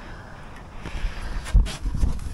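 Quiet outdoor background noise, broken about one and a half seconds in by a short, dull, low thump and a couple of soft clicks.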